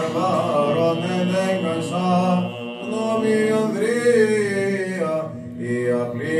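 Greek Orthodox Byzantine chant: a voice sings slow, ornamented melodic lines of a vespers hymn over a steady held low note, pausing briefly near the end.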